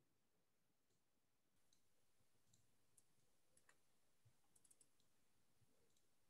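Near silence, broken by a few faint, short clicks that come in a quick cluster a little before the end.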